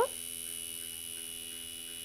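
Electrically maintained tuning fork buzzing with a steady hum as it keeps the stretched string of Melde's experiment vibrating.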